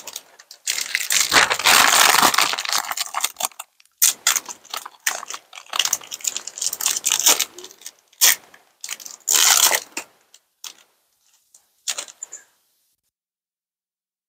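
Foil Pokémon booster pack wrapper crinkling and tearing as it is opened by hand, in a run of rustling bursts, the longest and loudest in the first few seconds, then shorter crinkles as the cards are slid out.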